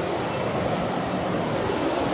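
Steady urban street background noise, an even hiss-like hum with no distinct events.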